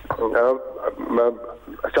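Speech only: a man talking in a studio discussion.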